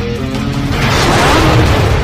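Loud intro music sting for a logo reveal, with a noisy whoosh-like swell laid over it that builds to its loudest about one and a half seconds in and then eases off.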